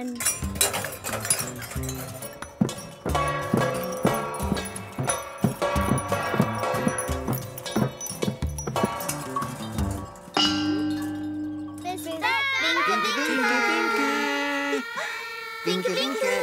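Hanging stainless-steel pots, colanders and trays struck by hand, making a quick, irregular clatter of metallic clangs and rings over background music. About ten seconds in the banging stops; a held musical chord follows, then wordless gliding voices.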